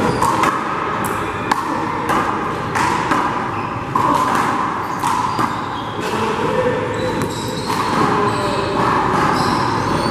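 Handball rally: a small rubber ball struck by hand and smacking off the wall and floor, sharp echoing hits about once a second or so, over a steady background noise.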